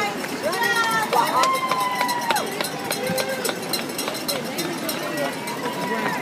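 Spectators shouting and cheering, with one long drawn-out shout about a second in, over the steady patter of many marathon runners' shoes on the pavement as they pass close by.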